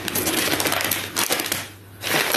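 Paper bakery bag rustling and crinkling as it is pulled open by hand, a dense run of small crackles that dies away shortly before the end.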